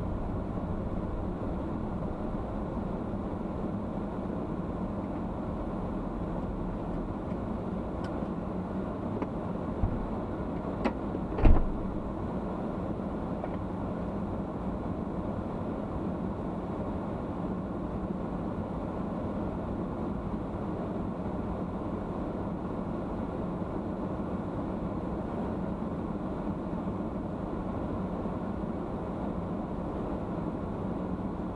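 Steady low rumble of a car heard from inside the cabin, the engine and road noise running evenly. A few faint clicks come around eight to eleven seconds in, then one short loud thump.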